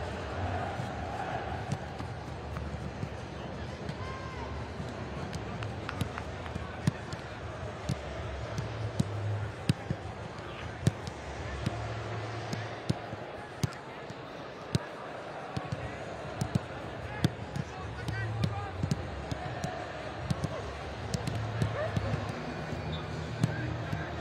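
Footballs being kicked and passed during a warm-up: sharp, irregular thuds of boot on ball, about one or two a second, over a background of voices.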